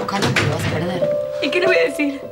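A woman speaking over soft background music that holds long, steady notes.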